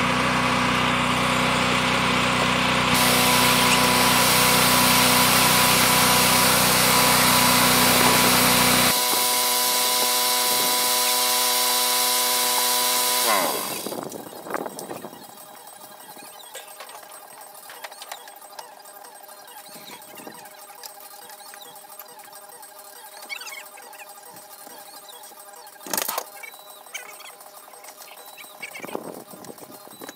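A machine motor running loudly and steadily, then winding down with a falling pitch about 13 seconds in. After that it is much quieter, with a sharp knock about 26 seconds in and a few more knocks near the end.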